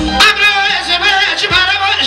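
Male voice singing a Kurdish melody into a microphone, with wavering ornamented turns, over live amplified band accompaniment with drum hits; the voice enters just after the start.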